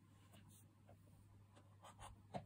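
Near silence: room tone with a low steady hum and a few faint, brief scratchy rustles.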